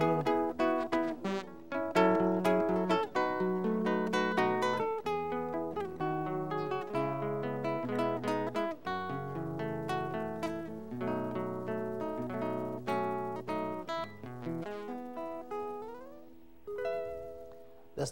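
Solo nylon-string acoustic-electric guitar played fingerstyle, with a plucked melody over bass notes and chords and no singing. Near the end the playing thins out and fades, and a final chord is struck and left to ring.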